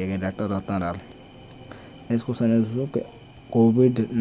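A man speaking in short phrases over a steady, high-pitched chirring of insects that runs all the way through.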